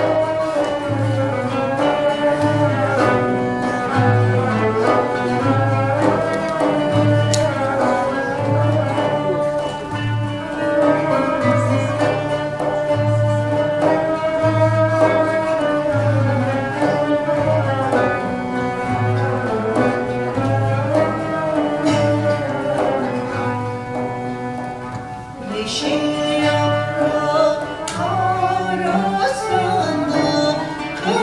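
Turkish folk ensemble of oud, kanun, cello and frame drum playing an Elazığ folk song, with a wavering sustained melody over a steady drum beat about once a second. A solo female voice comes in near the end.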